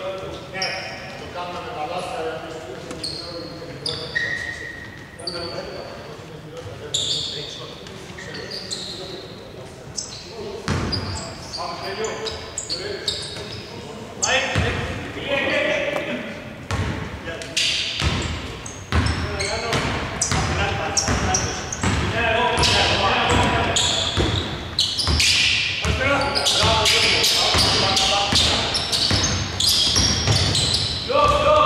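Basketball game sounds echoing in a large indoor hall: a ball bouncing on the wooden court, short high shoe squeaks and players' voices. The bouncing gets busier and louder in the second half.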